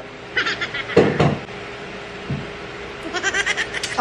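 A woman's wordless vocal reaction to downing a shot of liquor. There are short sounds in the first second, then a rapid pulsing cry near the end as she grimaces at the burn.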